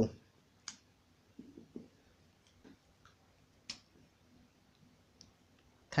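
Handling of a felt-tip marker and paper: mostly quiet, with a few faint sharp clicks, the clearest a little under a second in and near the four-second mark, and light rustling as the marker is taken up to write.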